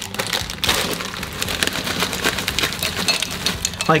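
Plastic bag of oyster crackers crinkling as the crackers are shaken out into a bowl, a dense crackle of many small clicks.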